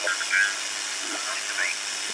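Steady, very noisy hiss and static of the 80-metre band from a homebrew direct-conversion receiver's speaker. There are faint short snatches of signals in the noise, and the audio has no bandwidth filtering, so the hiss spans the whole audio range.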